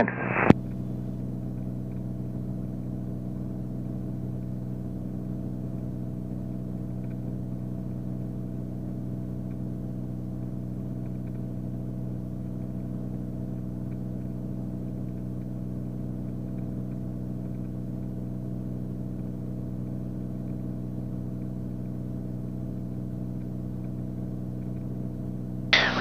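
Steady drone of a Beechcraft Bonanza's piston engine and propeller, heard from inside the cockpit, holding one even pitch.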